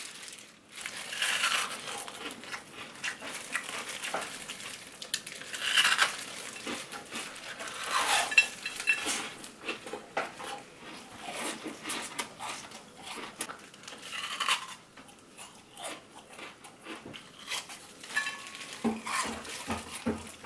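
Ice being bitten, cracked and crunched close to the mouth: a thin bowl-shaped shell of frozen ice breaking into pieces, with irregular sharp cracks and crunches throughout.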